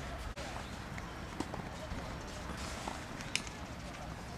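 A few sharp knocks of tennis balls being struck over steady outdoor background noise and distant voices.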